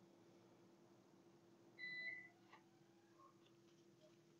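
Near silence: room tone with a faint steady hum, broken about two seconds in by one short, faint electronic beep at a single steady pitch.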